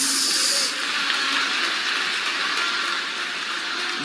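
A church congregation applauding, heard as a steady rush of clapping that is louder and brighter for the first second or so.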